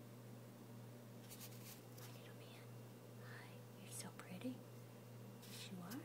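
Faint whispering voice in short soft phrases over a steady low hum, a little louder a little past the middle.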